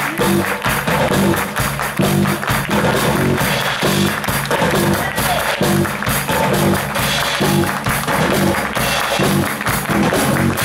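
Live band playing an instrumental stretch of a song: drum kit keeping a steady beat under a repeating low riff.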